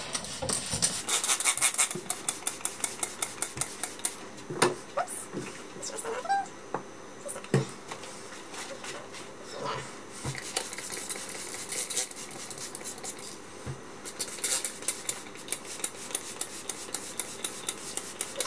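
Trigger sprayer of K&N air filter cleaner being pumped repeatedly onto a cotton air filter in a ceramic sink: a rapid run of short spray strokes, several a second, from about a second in, then scattered knocks as the filter is handled, and a second run of sprays near the end.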